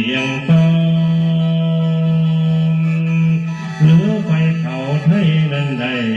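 Lao mor lam music: a male singer with khaen (bamboo free-reed mouth organ) accompaniment. A long note is held steady for about three seconds, then the melody bends and moves again about four seconds in.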